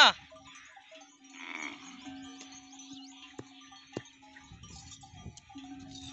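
Sheep and goats bleating among a herd at a watering pond, with one clear bleat about a second and a half in and two sharp knocks around the middle.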